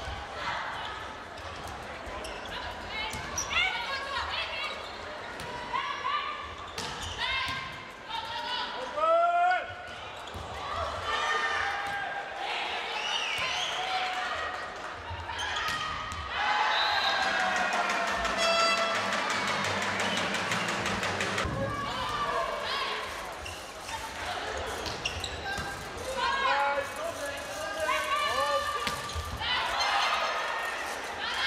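Indoor volleyball rallies: the ball being struck and players' shoes squeaking on the court, with voices from players and the crowd. The crowd noise swells for several seconds about halfway through, when a point is won.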